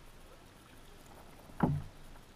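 A single sharp, hollow knock on the kayak about one and a half seconds in, with faint handling noise around it while a hooked fish is being landed.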